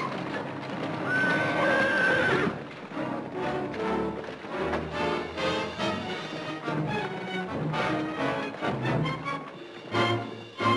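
A horse whinnies once, held for about a second, over the clatter of a horse-drawn wagon on the move. Then music takes over from about three seconds in.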